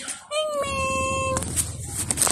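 A cat meowing: one long drawn-out meow that starts a fraction of a second in and stops about halfway through, followed by a few light knocks.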